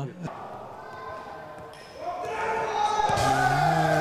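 Futsal ball touches and bounces in a sports hall as a player juggles it. From about halfway, a loud drawn-out tone holds and then slides down in pitch, covering the ball sounds.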